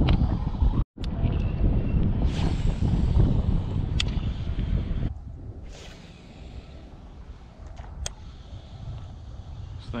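Wind buffeting the microphone with a heavy low rumble that drops away about halfway through, leaving a quieter wind hiss. Two sharp clicks come about four seconds apart.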